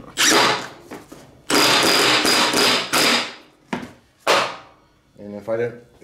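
Cordless impact wrench hammering a spindle pulley nut tight on a mower deck, in three bursts: a short one, a longer run of about two seconds with the motor whining, and a brief last one past the middle.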